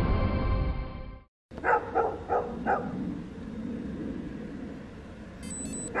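Intro music that cuts off about a second in, then a dog barking four times in quick succession over a low rumble, and a short high electronic beep near the end.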